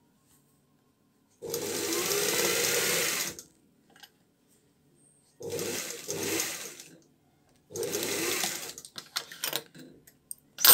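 Sewing machine stitching in three runs: a first of about two seconds, then two shorter ones, with quiet pauses between. A few light clicks near the end.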